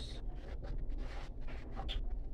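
Soft rustling and scraping of hands handling things, coming in irregular strokes.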